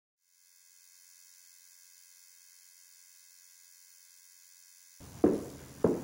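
A faint, steady, high-pitched electrical hum. About five seconds in, room sound cuts in with two short, sharp sounds, the first of them loud.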